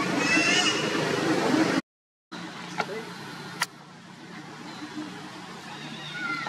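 A baby macaque gives a short, high squealing cry near the start over a loud, noisy background. The sound cuts out for a moment about two seconds in, then a quieter background follows with two sharp clicks.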